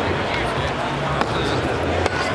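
Background chatter of a busy exhibition hall over a steady low rumble, with a single sharp click a little over a second in.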